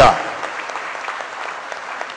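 An audience applauding, the clapping slowly dying away.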